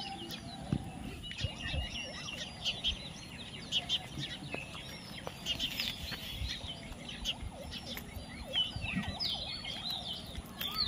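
Birds chirping: many short, high chirps and squeaks overlapping continuously, with a few soft low knocks.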